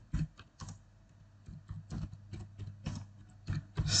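Computer keyboard typing: an irregular run of keystroke clicks as a sentence is typed.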